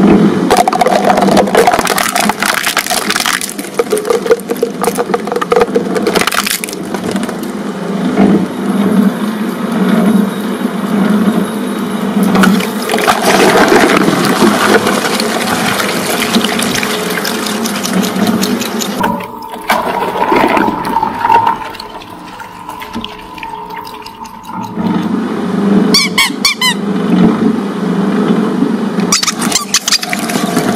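Twin-shaft shredder running, its toothed rotors crunching and grinding through plastic tubs of Play-Doh and a liquid-filled container that splashes as it bursts. Quick high squeaks near the end.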